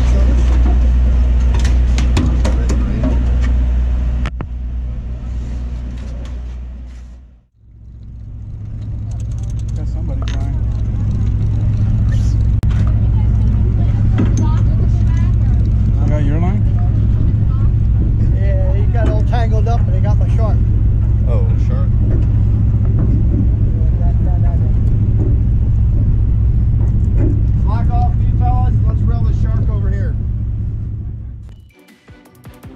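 Steady low drone of the party boat's engine, with indistinct voices of people on deck over it. The drone fades out briefly about seven seconds in and comes back as a higher hum.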